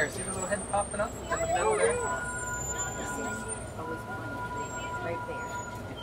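Safari ride truck running at low speed with a low engine rumble, heard from aboard. A steady high whine joins about two seconds in and holds.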